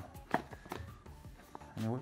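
Handling of a thick paper instruction booklet and a cardboard camera box: light rustling with a few sharp taps, the loudest about a third of a second in.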